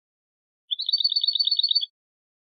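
European goldfinch singing one short trill: rapid, evenly repeated high notes, about ten a second, starting just under a second in and lasting about a second.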